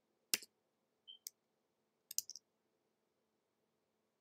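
Faint clicks of typing on a computer keyboard: a single sharp keystroke, another about a second later, then a quick run of three or four keys about two seconds in.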